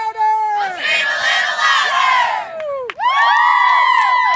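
A group of boys shouting together at the close of a team chant: a loud burst of cheering about a second in, then many voices holding one long shout together from about three seconds in.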